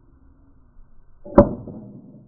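Two wooden boards slapped together once, played back ten times slower: a single drawn-out clap about one and a half seconds in, with a tail that fades over about half a second.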